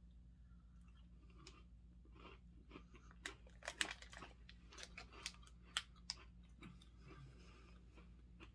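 Chewing of small crisp cereal mini biscuits, quiet at first, then a run of sharp crunches from about two and a half to six and a half seconds in.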